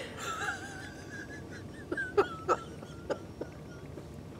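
Quiet, stifled laughter: a wavering high-pitched squeal in the first second, then a few short giggles.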